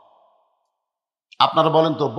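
A man's voice trails off, then about a second of dead silence before his speech starts again near the end.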